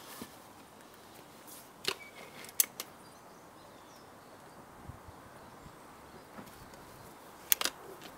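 Quiet outdoor background with a few sharp clicks: one about two seconds in, a louder one just after it, and a quick double click near the end.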